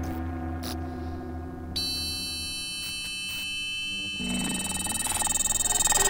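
Electronic ensemble music of sustained synthesizer tones. A bright cluster of high tones enters about two seconds in, and from about four seconds the texture turns denser and noisier and grows steadily louder.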